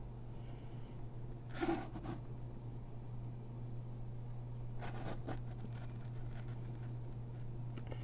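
A steady low hum, with a short breathy noise about two seconds in and a few faint rustles of wires being handled near the middle.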